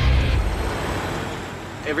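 The end of music with a heavy beat, then a semi-truck's engine and tyre noise fading away as it rolls in at low speed. A man's voice begins at the very end.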